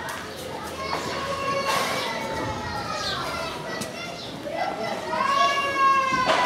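Children shouting and calling out as they play, high voices with drawn-out calls, the longest and loudest near the end.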